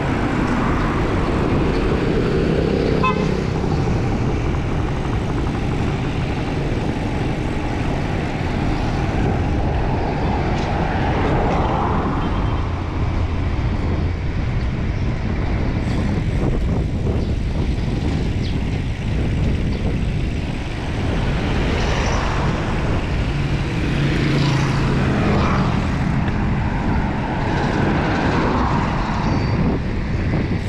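Wind rushing over the camera microphone of a road bike in motion, mixed with road traffic noise from passing cars and motorcycles. A low engine hum rises briefly about three-quarters of the way through.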